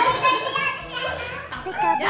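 Excited voices of a young girl and older girls chattering, with background music fading underneath.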